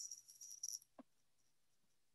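Near silence: a faint, high crackle for under a second, then one soft click about a second in.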